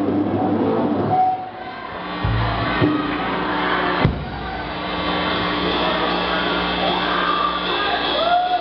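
Electric guitars sounding long held notes through stage amplifiers over a murmur of crowd noise, with a short low note about two seconds in and a single sharp hit, like a drum stroke, about four seconds in.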